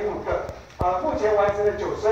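A person speaking Mandarin Chinese, presenting. A few low knocks fall in a short pause about a second in.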